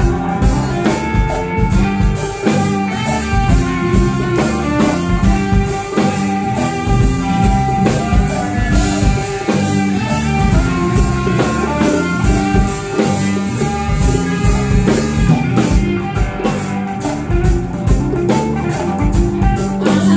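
Live Malian afro-psychedelic band playing an instrumental passage: electric guitar over drum kit, bass guitar and djembe, with a steady beat and some bending notes about halfway through.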